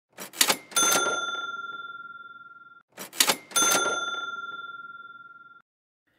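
A sound effect heard twice: each time a quick rattle of mechanical clicks, then a single bright bell ding that rings out and fades over about two seconds, like a cash register's ka-ching.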